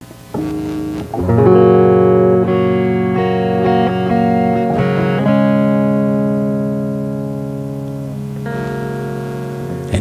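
SG-style solid-body electric guitar playing a slow intro: strummed chords are left to ring and change a few times, about a second in, around five seconds in and again near the end.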